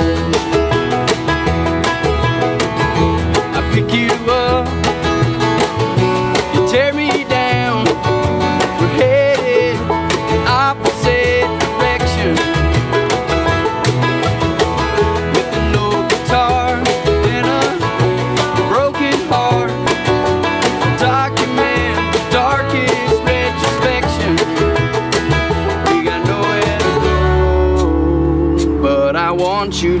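Acoustic bluegrass band playing an instrumental passage: upright bass, acoustic guitar, mandolin, five-string banjo and a snare drum. Near the end the picking thins out to sustained low notes.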